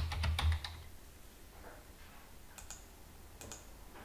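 Typing on a computer keyboard: a quick run of keystrokes in the first half second or so, then a few isolated, fainter clicks.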